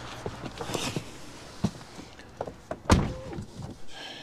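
Small clicks and handling noise of someone getting into a Tesla Model 3, then one loud thunk about three seconds in, the car door shutting.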